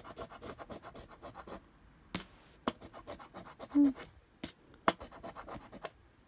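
A metal coin scraping the latex coating off a paper scratch card in quick back-and-forth strokes for about a second and a half, followed by a few separate sharp clicks and scrapes.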